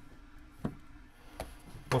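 Screwdriver tightening a small wide-headed screw into a motorcycle carburetor body, heard as faint scraping with two short sharp clicks about three-quarters of a second apart.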